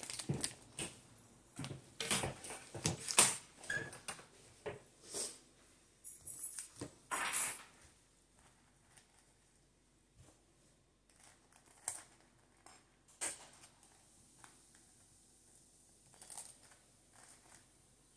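A table knife scraping butter across a toasted cinnamon raisin bagel, with scattered clicks and taps of the knife and plate. The sounds are busiest in the first eight seconds and sparser after.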